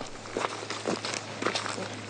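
Footsteps on a dirt path, about two steps a second, over a steady low hum.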